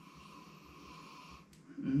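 A person sniffing a glass of beer to take in its aroma: one long inhale through the nose, lasting about a second and a half and stopping abruptly.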